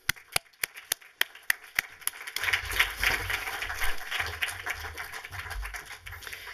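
Applause: one person claps sharply close to the microphone, about three claps a second. After about two seconds, the rest of the room's audience applause swells in and keeps going.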